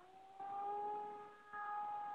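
Radio-controlled model airplane's motor at full throttle as the plane takes off from snow. Its steady whine finishes rising in pitch about half a second in, then holds level, swelling and easing as the plane moves.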